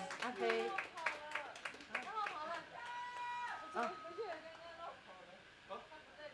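Scattered audience clapping mixed with voices, dying down after about two seconds, then quieter talking with a couple of short steady held tones from the stage around the middle.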